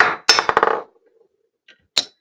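PASCO ballistic launcher firing a ball into a ballistic pendulum: a sharp metallic clack followed by a quick rattle of clicks, then one more sharp click near the end.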